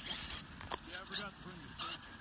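Distant voices of people talking, with a few short scuffing or rustling bursts and no clear motor sound.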